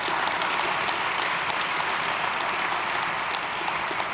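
An audience applauding: a steady wash of many hands clapping that keeps up at an even level throughout.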